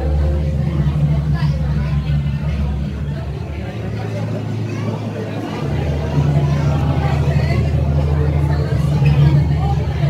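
A loud, steady low hum with voices chattering in the background; the deepest part of the hum drops away for a little over a second at about four seconds in.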